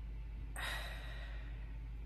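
A boy sighs once, a short breathy exhale about half a second in that fades away, over a steady low hum.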